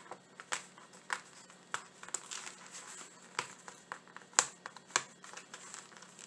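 Plastic window-cling sheet crinkling and crackling in irregular sharp snaps as clings are peeled out of their backing, the loudest snap about four and a half seconds in.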